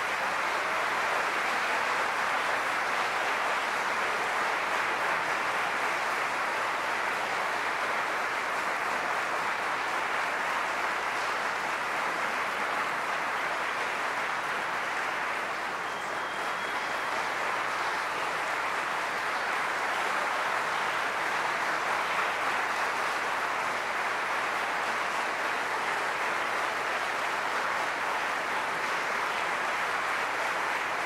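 Concert audience applauding steadily at the close of a recital, a dense, even clapping that holds at one level throughout.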